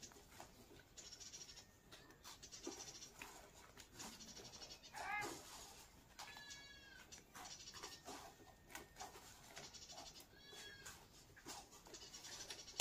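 Goat kids bleating three times, faintly: a lower call about five seconds in, then two higher, shorter calls about a second and a half later and near ten and a half seconds. Soft clicks and rustling run between the calls.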